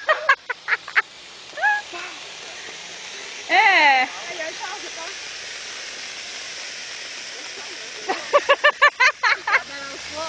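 Ground fountain firework spraying sparks with a steady hiss. Over it, high-pitched bursts of voice like laughter near the start and again near the end, and one long loud yell about three and a half seconds in.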